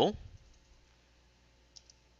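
A few light computer-keyboard key clicks near the end, as text is typed, following the tail of a spoken word.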